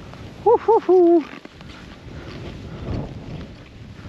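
A skier whoops about half a second in: two short hoots and a longer held one. Skis then slide through deep powder snow with a steady rushing hiss.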